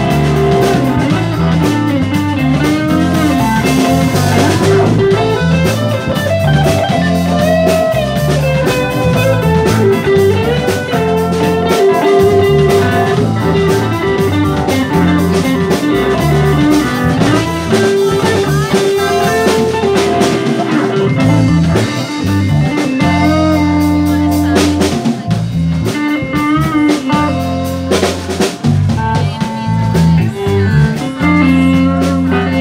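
A live band playing: electric guitar, electric bass, drum kit and keyboards, with a lead line gliding up and down over a steady beat.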